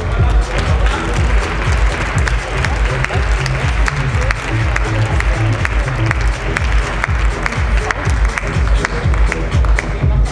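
Audience applause and cheering over loud electronic dance music with a steady thumping beat. The clapping swells about a second in and thins out near the end.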